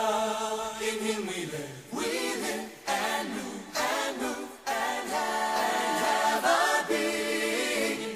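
Choir singing in a worship song, with held notes broken by short gaps between phrases.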